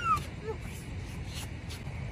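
A small child's high squeal that rises and falls, trailing off right at the start, then a brief faint vocal sound about half a second in, over low steady outdoor background noise.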